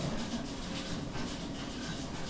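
Quiet room tone: a faint, steady background hiss with no distinct sound.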